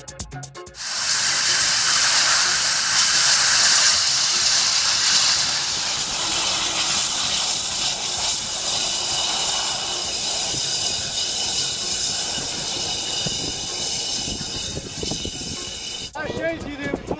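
Natural gas jet fire from a leaking valve spindle: gas at 30 bar escaping through the quarter-inch gap around the spindle and burning, a loud steady hiss. It starts suddenly about a second in and is loudest over the first few seconds.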